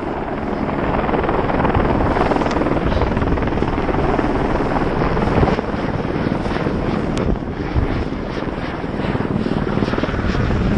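Snowboard sliding and carving over snow at speed, its edge scraping and chattering, with wind buffeting a body-mounted action camera's microphone in a continuous rushing noise.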